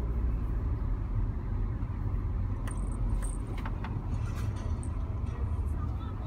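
Steady low rumble of a car's engine and tyres heard inside the cabin while driving up a ramp, with a few light clicks about three to four seconds in.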